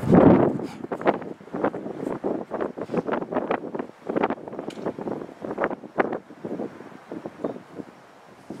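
Wind buffeting the microphone, with a strong gust at the start, followed by a run of short, irregular knocks, about two to three a second, that fade out near the end.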